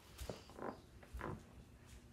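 A few faint rustles with soft low bumps, three times in quick succession: handling and movement noise near the microphone.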